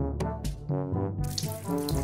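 Water pouring from a plastic watering can into a plant pot, over background music with a quick, steady beat.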